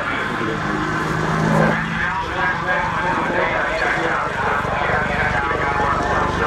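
AH-64D Apache attack helicopter in flight, its rotor chop a steady rapid low beat over the whine of its twin turboshaft engines.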